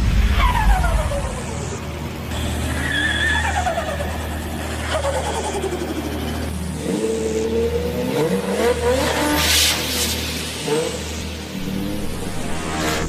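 High-performance vehicle engines passing by at speed, each falling in pitch as it goes, then engines revving up and down with a burst of tyre-squeal hiss about ten seconds in.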